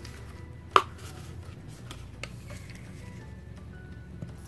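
Handling noise while the contact solution is fetched: one sharp knock or clack a little under a second in, and a fainter click about two seconds in, over a low steady room hum.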